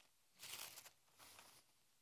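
Paper pages being turned and handled, in two short rustles: a louder one about half a second in and a fainter one near the middle.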